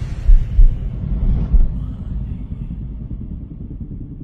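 Deep low rumble from a film trailer's sound design, with a few heavy booms in the first two seconds, then settling to a steadier, quieter rumble.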